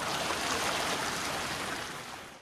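Steady rushing-water sound, like a flowing river, fading away near the end.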